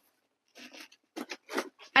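Cardboard shipping sleeve being slid up and off a potted citrus tree: a few short scrapes and rustles of cardboard and leaves, starting about half a second in.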